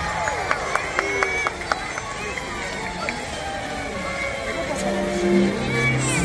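Fireworks popping and crackling, several sharp cracks in the first two seconds, over the voices of a crowd; show music comes back in near the end.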